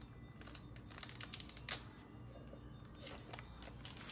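Faint light crinkles and clicks of small plastic sachets and a clear zip-top plastic bag being handled, scattered through, the sharpest a little under two seconds in.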